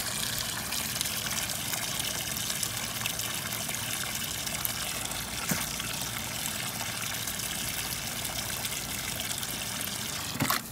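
Garden hose running into a plastic tub of water, a steady splashing gush.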